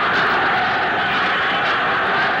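Football stadium crowd cheering, a steady, even wash of noise.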